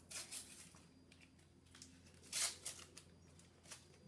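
Panini sticker packet being torn open by hand: two short ripping sounds, one at the start and one about two and a half seconds in, then a faint tick near the end.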